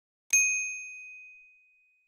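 A notification-bell sound effect: a single bright ding, struck once and ringing out for about a second and a half.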